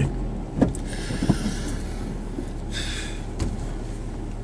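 Car cabin noise while driving: a steady low engine and road rumble, with a couple of light clicks about half a second and just over a second in, and a short hiss around three seconds in.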